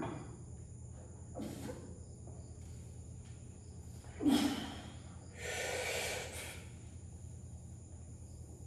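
A man breathing hard through a barbell lift: short sharp breaths near the start and about a second and a half in, a loud, forceful breath just past four seconds as the bar comes up, then a longer breath out around six seconds.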